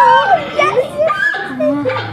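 Young girls' excited, high-pitched voices: squeals and exclamations without clear words.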